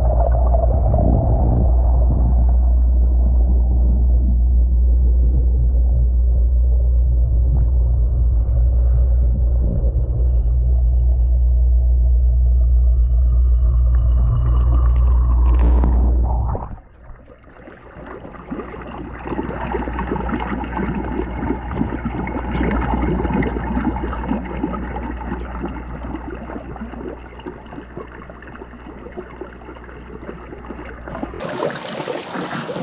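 A vortex compost tea brewer running, its air-lift pump churning the water, heard first with the microphone underwater as a loud, steady, deep rumble. About sixteen seconds in this cuts off as the microphone comes out of the water. From then on the swirling, splashing and bubbling of the vortex is heard in the open air.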